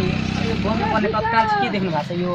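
A man talking amid a crowd, over a low engine hum in the background that fades about halfway through.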